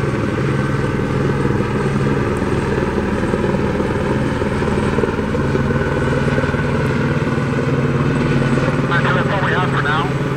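Police helicopter flying overhead, its rotor beating and engine droning steadily.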